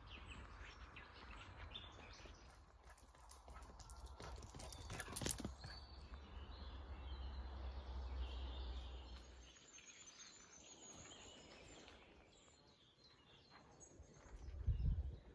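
Faint woodland ambience with birds calling in the background, a low rumble that stops about two-thirds of the way through, and a brief cluster of sharp clicks a few seconds in.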